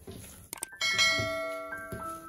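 Two quick clicks about half a second in, then a bright bell chime that rings out and fades: a subscribe-button sound effect, over soft background music.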